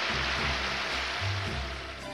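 Audience applause over the opening bass notes of a band's accompaniment. The applause thins near the end.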